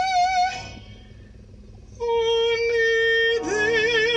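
A woman singing long held notes. A high note with vibrato ends about half a second in; after a short pause a lower note starts about two seconds in, held steady at first and then with vibrato.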